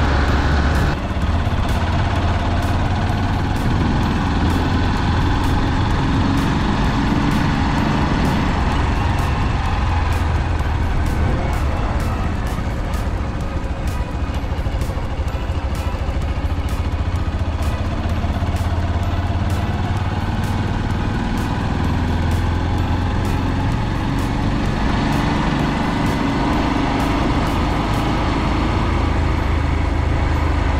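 Motorcycle engine running at a steady cruising speed with wind and road noise, recorded from a moving sidecar rig: a continuous low drone that holds steady throughout.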